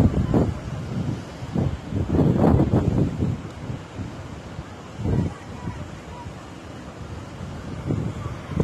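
Strong wind buffeting the microphone in uneven gusts, loudest about two seconds in and again near five seconds. The wash of surf breaking on a sandy shore sits underneath.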